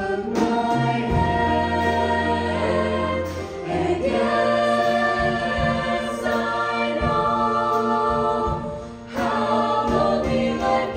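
High school jazz choir singing in close harmony into microphones, many voices holding chords over a low sustained bass part. The sound dips briefly near the end before the voices come back in.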